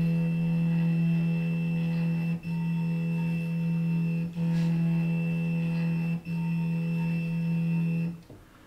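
Stepper motor of a Gluwphy 20 W laser engraver driving the laser head up and down during autofocus: a steady pitched hum, broken three times, about two seconds apart.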